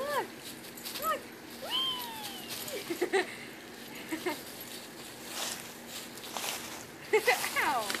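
A woman's wordless exclamations and laughter, ending in a burst of laughs, with dry fallen leaves rustling in between as a Yorkshire terrier puppy plays in them.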